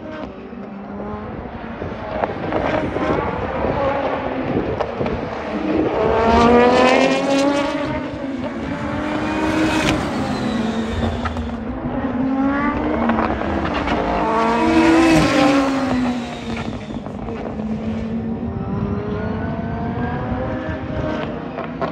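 Toyota GR Supra GT500 race car, a turbocharged 2-litre four-cylinder, accelerating and braking past on track at racing speed. The engine note climbs and drops repeatedly through gear changes. It is loudest about a third of the way in and again about three quarters through.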